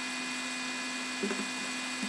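Steady electrical hum with background hiss, and a faint, brief sound a little over a second in.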